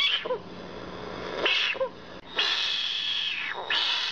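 Frogs screaming in distress: four shrill, raspy cries, short ones at the start and about a second and a half in, a longer one from about two and a half seconds, and another just before the end.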